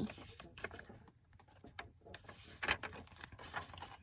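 Soft paper rustling with scattered light taps and clicks as a journal page is folded over and pressed along its crease by hand.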